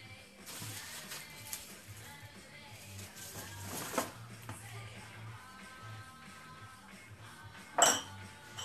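Background music with dishes being handled: a few clinks, the loudest a sharp clink near the end.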